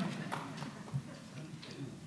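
Light, scattered audience laughter, heard faintly from the hall, fading over the two seconds.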